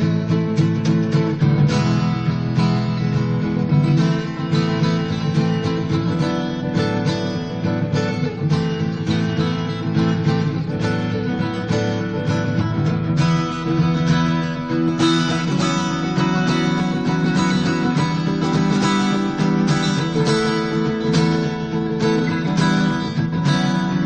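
Acoustic guitar strumming steadily through an instrumental passage of a folk song, with no singing.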